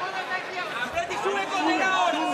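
Several voices talking and shouting over one another, with no clear words.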